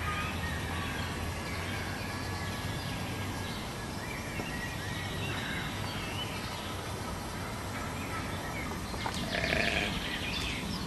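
Outdoor ambience: a steady low rumble under scattered bird chirps and thin whistled calls, with a louder cluster of calls about nine seconds in.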